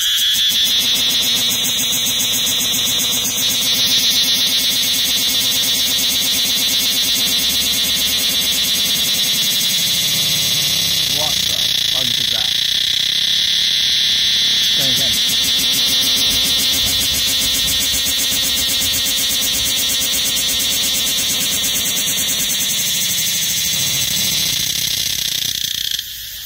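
Cicada calling: a loud, steady, high-pitched buzz made of very rapid pulses, held for over twenty seconds and cutting off abruptly at the end.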